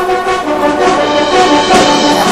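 Orchestral music with brass instruments, sustained notes changing every half second or so.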